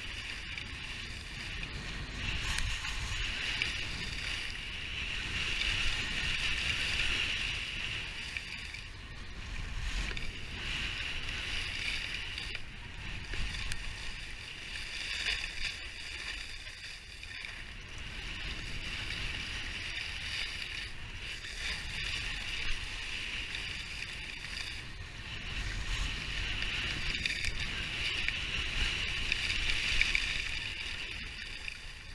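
Skis scraping and carving over packed snow in a steep downhill run, the hiss swelling and fading every few seconds with the turns. A low wind rumble on the microphone runs under it.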